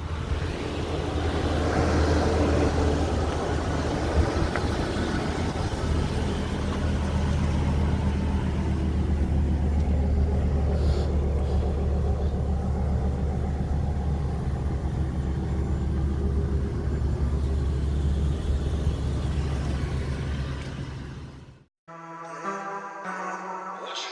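Idling engine of a small cutaway minibus heard up close, a steady low drone as someone walks around the bus during a pre-trip check.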